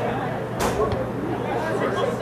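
Scattered voices of spectators and players chattering, with a brief swish about half a second in.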